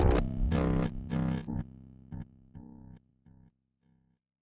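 Distorted electric guitar and bass music: a few struck chords that ring out and die away over about three seconds.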